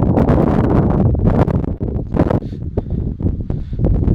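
Wind buffeting the camera microphone: a loud, uneven rumble with hiss that dips briefly about two seconds in.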